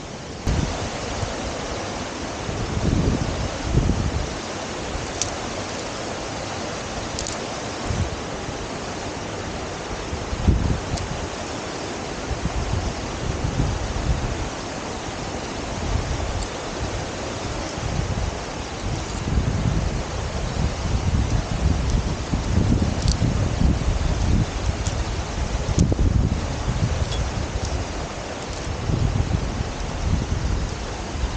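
Wind buffeting the microphone of a body-worn action camera in uneven low gusts, over a steady rushing hiss from a mountain stream and waterfall below.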